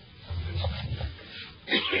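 A person coughing: a short, harsh cough near the end, after some low muffled throat sounds.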